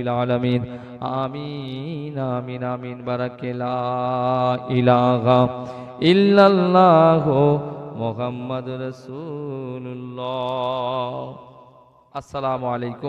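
A man's voice chanting a closing prayer through a microphone and PA, in long drawn-out melodic phrases with wavering ornaments. It swells and rises in pitch about halfway through, then fades out near the end.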